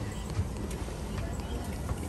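Steady low hum inside an airliner cabin parked at the gate, with a few light clicks.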